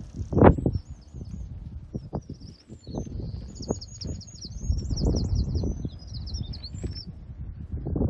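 A small songbird singing a long run of quick, high, repeated sweeping notes, over uneven low rumbling of wind and handling at the microphone, with a loud thump about half a second in.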